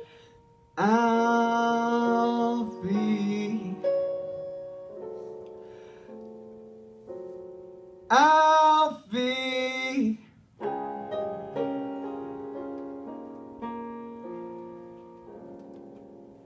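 A male singer holding long notes of a slow ballad over electric keyboard accompaniment, in two phrases. After the second phrase the keyboard's final chords ring on and slowly fade.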